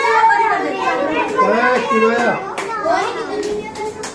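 Children and adults talking over one another in lively, overlapping chatter, with a few light clicks in the second half.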